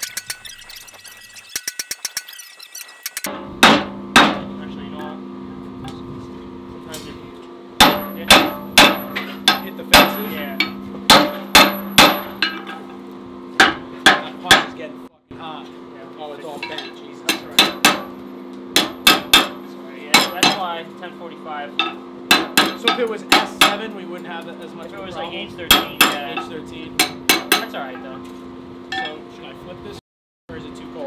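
Hand hammer striking a steel hammer-eye drift to drive it through a red-hot 1045 steel billet, with the hot steel needing to stay hot for the drift to go in. Runs of sharp, ringing metal blows, about two a second, with short pauses between runs, over a steady hum.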